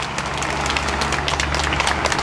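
A crowd clapping in a scattered patter over a steady low hum.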